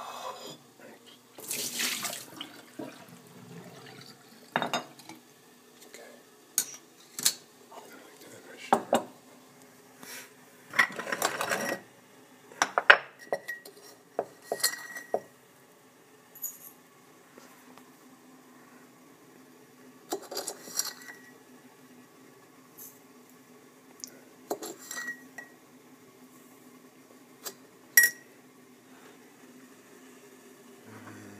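Scattered clinks and knocks of a stainless steel tea strainer, spoon and ceramic mug being handled, some of them ringing briefly, with a couple of short bursts of liquid pouring.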